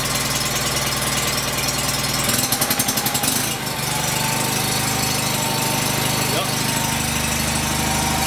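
1989 Wheel Horse 520-H garden tractor engine idling steadily. A brief pulsing, uneven patch comes at about two and a half seconds in, and the engine note settles at a slightly different pitch after it.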